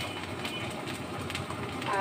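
Food frying in hot fat in a non-stick frying pan: a steady sizzle with many small crackling pops.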